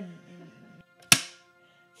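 A single sharp, loud smack-like impact about a second in, with a brief ring of small-room reverb. Faint background music with sustained notes runs underneath.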